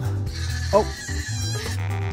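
Background music with a steady bass line, and a baby goat bleating briefly over it.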